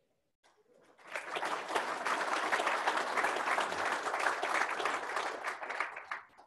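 Audience applauding, building up about a second in and tailing off near the end.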